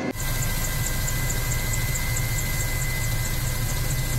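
Firefighting helicopter's engines and rotor running steadily in flight, a constant low drone with a faint regular high ticking about four times a second.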